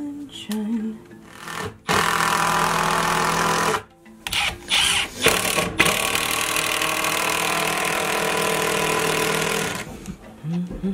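Power drill driving screws into wooden boards. It runs for about two seconds, stops, gives a few short bursts, then runs steadily for about four seconds and stops near the end.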